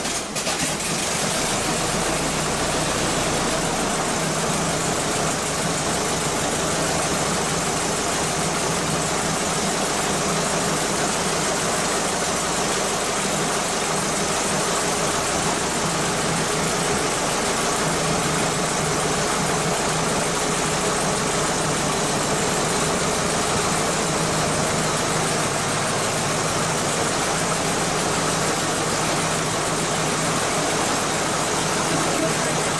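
A vintage fire engine's engine running steadily at idle.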